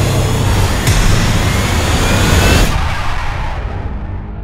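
Film sound effect of a spaceship breaking up as it crashes: a loud, dense rushing noise over a deep rumble. It cuts off sharply about two and a half seconds in, leaving a low rumble that dies away.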